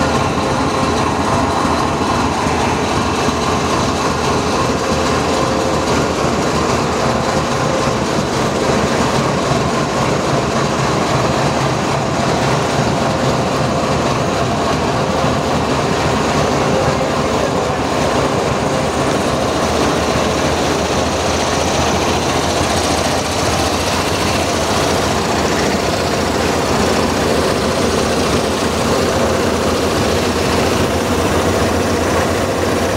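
Diesel locomotive engine idling close by: a loud, steady engine noise with a few held tones and no change in pace.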